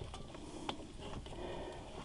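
Faint clicks of a small wrench working the bolt on the bracket that holds the A/C line clamp, with one sharper click about two-thirds of a second in.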